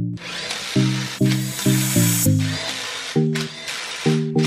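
A power tool whirring hard for about two seconds, then more faintly, as it runs in wheel bolts. Background music with a plucked, rhythmic melody plays throughout.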